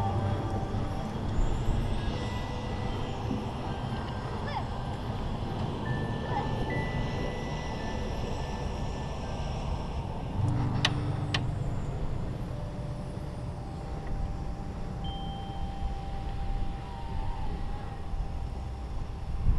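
Wind rumbling on a chest-mounted action camera's microphone, with faint steady tones in the background and two sharp clicks about eleven seconds in.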